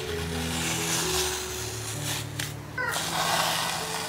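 Background music with held low notes under a hissing wash, and a few short higher tones that step down in pitch a little before the three-second mark.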